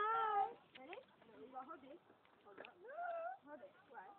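A girl's high-pitched wordless squealing: one long wavering squeal at the start, then short cries and a rising whine about three seconds in.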